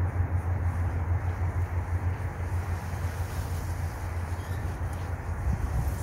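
Steady low rumble with an even hiss of noise over it, with no distinct clicks or calls.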